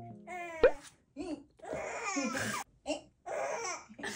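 Playful vocalising between an adult and a baby: high, sliding coos, laughter and babbling in short bursts, with a sharp click about half a second in.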